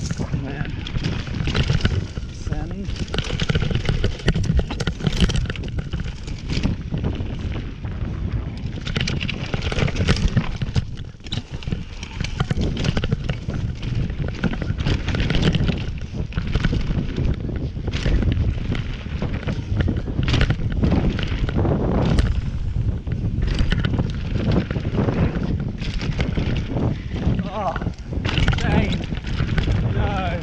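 Electric mountain bike ridden fast down a rough dirt trail: wind buffeting the microphone, with tyre noise and constant rattling and knocks from the bike over bumps.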